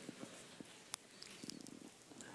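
Near silence: room tone, with a single faint click about a second in.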